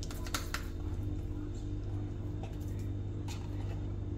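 A metal spoon scooping mayonnaise from a jar, giving a few light clicks and taps against the jar over a steady low hum.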